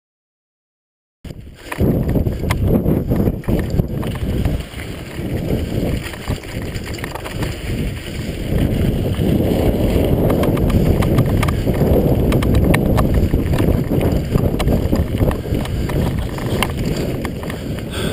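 Mountain bike being ridden over a rocky dirt trail, heard from the bike-mounted camera: a loud wind rumble on the microphone with constant rattles and knocks as the bike goes over bumps. It cuts in suddenly about a second in.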